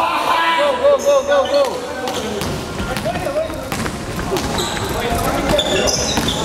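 Basketball game play on a wooden gym floor: a ball bouncing, sneakers squeaking on the court and players' voices calling out, with a quick run of short calls early on.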